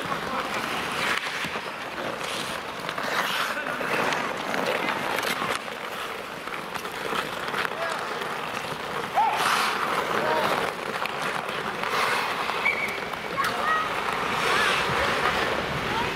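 Ice hockey in play: skates scraping and carving on the ice, sticks and puck clacking in sharp knocks, and players calling out a few short shouts.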